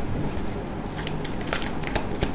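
A deck of tarot cards being shuffled by hand: a run of quick, crisp card clicks beginning about a second in.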